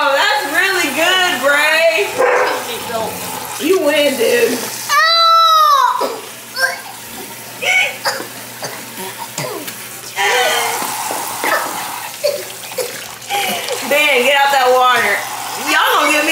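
Kitchen tap running into a sink and splashing over plastic bowls and cups, under children's babble and squeals. A loud, long rising-and-falling child's cry comes about five seconds in.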